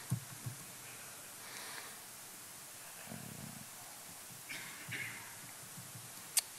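Quiet room hiss with a few faint keystrokes on a laptop keyboard, plus soft low breathing-like noises close to the microphone.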